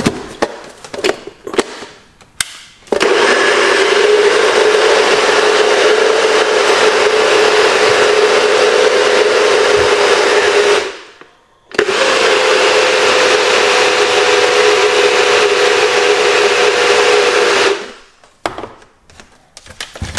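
Countertop blender running at full speed, blending a fruit smoothie, in two runs of about eight and six seconds with a short stop between. A few knocks come before it starts and after it stops.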